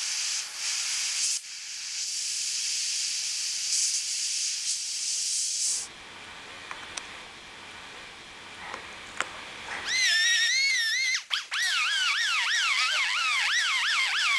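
A steady hiss of air blown over a freshly plastic-welded headlight tab to cool it and lock it in place, stopping after about six seconds. About ten seconds in, a small rotary grinder with a sanding disc starts, its high whine wavering up and down as it grinds the welded tab to shape.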